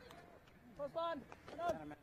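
Faint, indistinct voices: two short calls, one about a second in and another near the end, under a low background.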